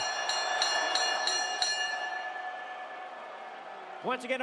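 Boxing ring bell struck rapidly, about seven strikes at roughly three a second, then ringing out and fading over faint crowd noise.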